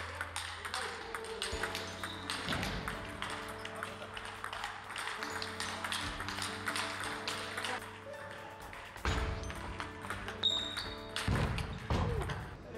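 Background music over the repeated light clicks of a table tennis ball hitting bats and the table during a rally.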